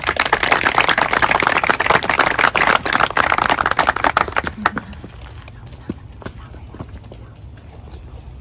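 Small seated audience applauding: a dense burst of clapping that thins to a few scattered claps about four and a half seconds in and dies away by about six and a half seconds.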